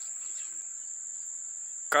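Insects, likely crickets, keeping up a steady, unbroken high-pitched trill, with a faint background hiss.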